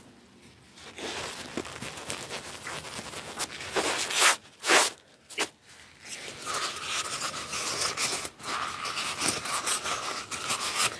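Fast scratchy rubbing and crinkling of a cardboard tube handled right against the microphone, with a few louder swishes around the middle.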